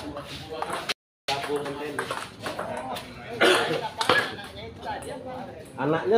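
Onlookers chatting, with the sharp clicks of a table tennis ball struck back and forth on bats and table during a rally. The sound drops out completely for a moment about a second in.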